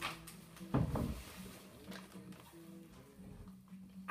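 Red-and-yellow fabric being handled and moved, with a soft thump about a second in and faint rustling after it, over a low steady hum.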